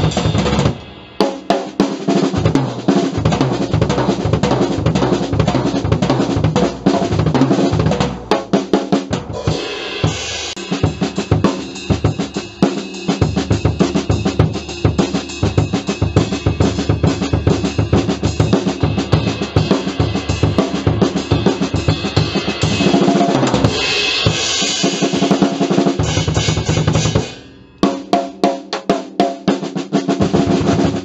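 Acoustic drum kit played with sticks: a continuous groove of bass drum, snare and cymbals, with dense, rapid strokes. It drops out briefly about a second in and again a couple of seconds before the end, then picks up again.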